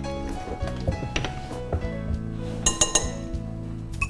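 Metal spoon clinking against glass bowls, with a quick run of ringing clinks near the end, over background music.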